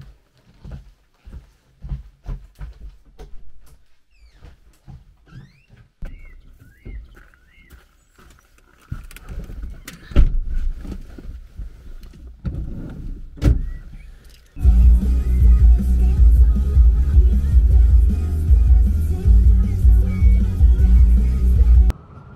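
Scattered clicks and knocks of things being handled, with two sharper thumps about ten and thirteen seconds in. Then loud music with a heavy bass starts suddenly about fifteen seconds in and stops abruptly.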